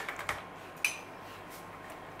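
A wire whisk stirring a thin sauce in a plastic bowl, the wires giving soft clicks against the side, with one sharper clink a little under a second in.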